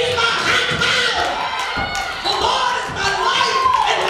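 A woman preaching through a microphone and PA in a sing-song, chanted delivery. Near the end her voice stretches into one long held, gliding note. Sharp knocks and thumps come now and then.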